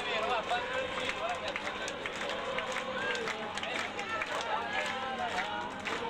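A large crowd of diners talking and calling out over one another, a steady babble of many voices.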